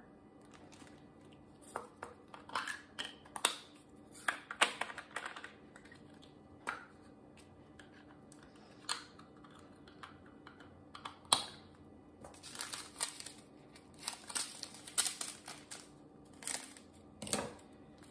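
Small plastic bags of diamond-painting drills crinkling and rustling as they are handled, with irregular light clicks, busier in the second half.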